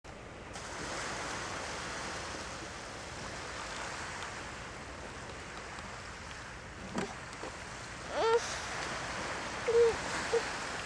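Steady rushing wash of sea surf. A short click comes about seven seconds in, and brief voice-like sounds that rise in pitch come near the end.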